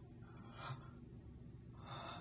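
Two short, sharp intakes of breath from a man, about a second and a half apart.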